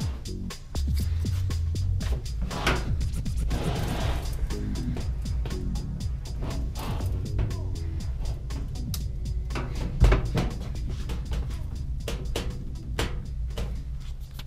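Background music with a stepping bass line, over scattered knocks and bumps, one louder thump about ten seconds in.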